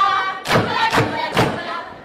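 A group of girls singing a folk song in chorus, with sharp percussive thumps keeping time about twice a second; the singing dies down near the end.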